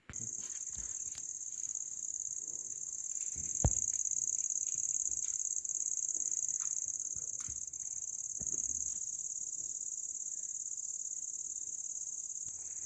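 Crickets chirping in a steady high-pitched drone, with a single sharp click about four seconds in.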